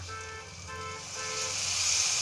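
Water poured from a steel pot into a hot pan of fried onion-tomato masala, setting off a hissing sizzle that rises and grows louder from about one and a half seconds in. Before it, three short steady tones sound one after another.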